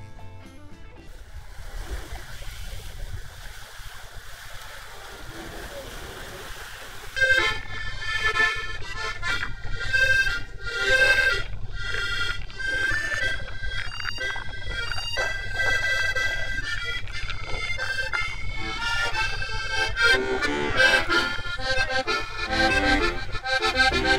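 Steady hum and rush of a tour boat's engine and passing water, then about seven seconds in an accordion starts playing a tune, suddenly and much louder, over the boat's running noise.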